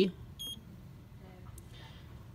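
A single short electronic beep from the Xhorse Condor XC-Mini key cutting machine's touchscreen, about half a second in, acknowledging the tap that selects the standard single-sided key type.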